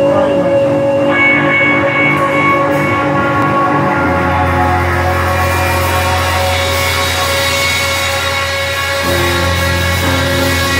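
A live band playing, with electric guitars holding long sustained droning notes over drums. About four seconds in, a deep low note comes in and holds.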